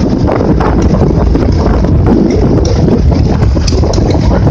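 Heavy wind buffeting the microphone on a moving motorcycle sidecar, a loud steady rumbling rush with the vehicle's running noise underneath.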